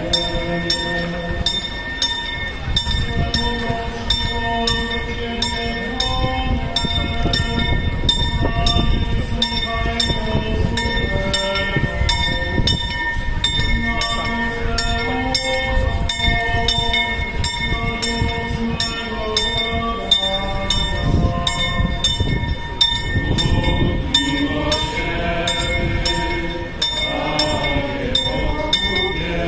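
Bells of St Mary's Basilica tolling, struck in an even rhythm with their ringing tones hanging on, while a crowd sings a slow hymn of long held notes beneath.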